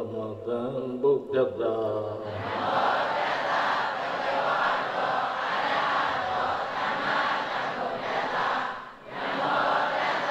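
A single male voice recites in a chant-like tone for about two seconds, then many voices of a congregation recite together in unison. The group recitation breaks off briefly near the end and starts again.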